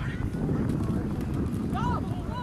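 Rough low rumble of wind buffeting an outdoor camcorder microphone, with a voice calling out near the end.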